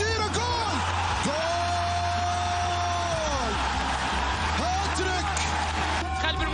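A football commentator's long drawn-out shout, held for about two seconds, over stadium crowd noise and background music.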